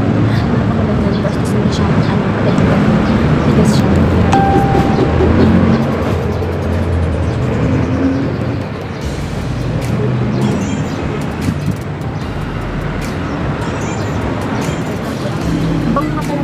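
A woman talking over background music, with a steady low noise underneath.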